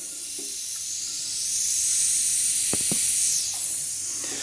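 Air hissing steadily out of the open bleed valve on a towel-rail radiator, a little louder in the middle: air trapped in the central-heating system escaping now that the system pressure has been topped up. Two light clicks about three seconds in.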